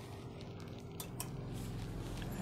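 Cleaned and lubricated computer power-supply fan and PC running with a faint steady hum, growing a little louder from about a second in, with a couple of faint clicks around then. The fan is spinning smoothly again after being clogged with dust.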